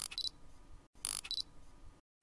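Camera shutter sound effect: a double click, a sharp snap followed a moment later by a second click, heard twice about a second apart.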